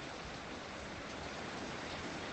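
Faint, steady hiss of background noise.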